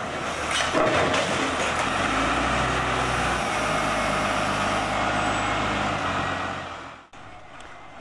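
Diesel wheel loader running under load as its bucket pushes down brick walls, with masonry and rubble crashing and clattering. About seven seconds in the sound drops to a quieter steady engine run.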